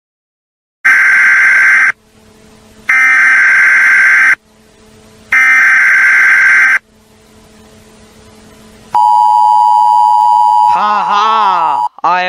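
Electronic sound-effect tones. Three loud, harsh buzzes of a second or so each come with short gaps between them. Then a steady tone starts, which breaks into wavering, up-and-down gliding tones near the end.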